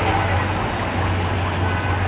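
Busy street traffic noise with a steady low engine hum and people's voices in the background.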